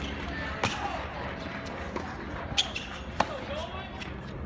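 Tennis rally on an outdoor hard court: the ball is struck by rackets and bounces off the court. There are three sharp pops, about half a second in, near two and a half seconds and a little after three seconds, the last the loudest.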